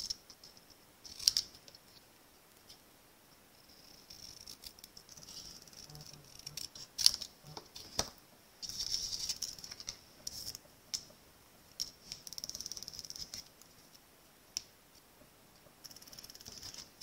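Small paper snips cutting a strip of cardstock and the card being handled, giving a few soft clicks and snips with stretches of light paper rustling.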